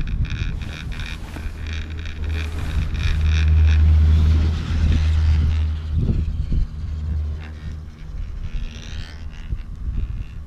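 Chairlift running over a lift tower: the chair's grip rolls across the tower's sheave wheels with rapid clicking, then a deep rumble that is loudest a few seconds in and dies away by about eight seconds. Wind buffets the microphone.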